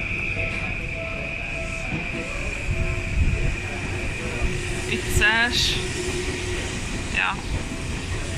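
Commuter train at a station platform: a steady high whine, with a low rumble swelling about three seconds in, over the murmur of a waiting crowd.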